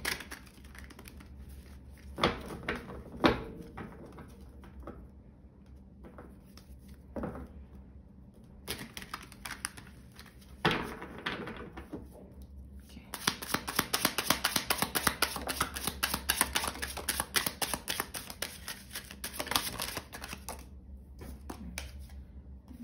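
A tarot deck handled and shuffled by hand: a few separate taps and slaps of cards, then, from a little past halfway, about seven seconds of rapid, even card clicking from shuffling that stops shortly before the end.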